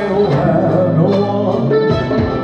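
Live band playing a slow ballad, with electric guitar and drums under a male singer's voice.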